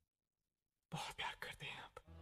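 Silence for the first second, then a person whispering briefly and breathily.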